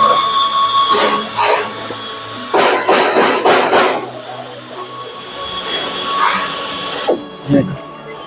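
Tapping machine cutting threads into holes in steel corner brackets: a motor whine with short bursts of cutting noise, the longest from about two and a half to four seconds in.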